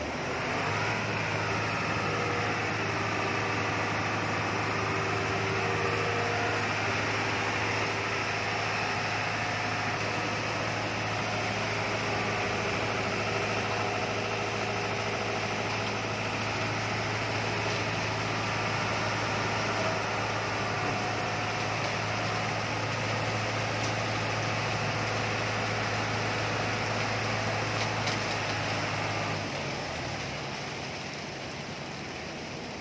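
Engine running steadily with a constant low hum under a haze of machinery noise. The hum starts about a second in and cuts off abruptly near the end.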